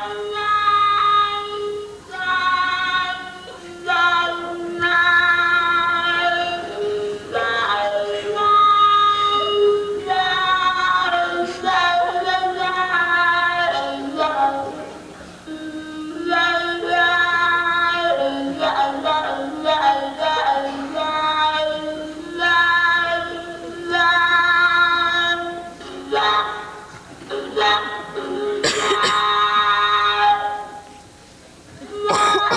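Recorded violin-like tones played through a pillow speaker held in the mouth, her mouth shaping the sound like a talk box so it sings wordless, voice-like melodic phrases. Long held notes with vibrato, in phrases a few seconds long with short gaps between them; a brief noisy burst near the end.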